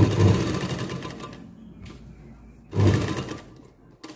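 Domestic sewing machine stitching a seam through the fabric in two short runs. The first starts at the outset and trails off over about a second and a half; the second is a shorter burst about three seconds in.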